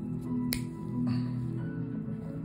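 Background music with steady held tones, and one sharp snip of steel nail nippers cutting through a thick toenail about half a second in.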